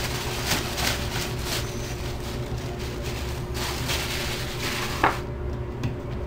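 Clear plastic bag crinkling and rustling as a ball of flour dough is handled and pulled out of it, stopping about five seconds in with a single thump as the dough is set down on the cutting board.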